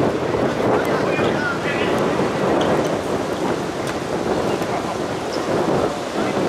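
Wind buffeting the camera microphone: a steady rushing noise, with faint shouts of players coming through now and then.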